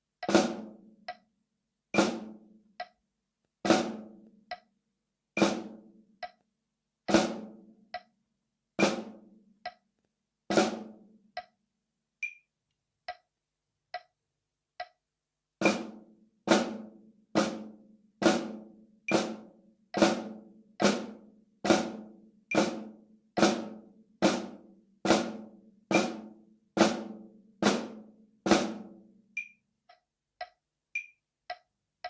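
Snare drum flams struck with drumsticks, each a light grace note run into an accented stroke, alternating hands, to a faint metronome click at 70 beats a minute. For about 11 seconds a flam falls on every other beat. After a few seconds with only the click, a flam falls on every beat until near the end.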